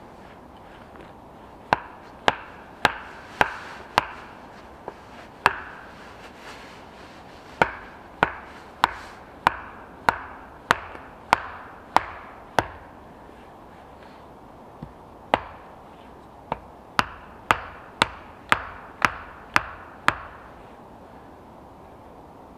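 A wooden stake being hammered into the forest floor with repeated sharp wooden knocks, about two blows a second, in three runs of six to ten blows with short pauses between.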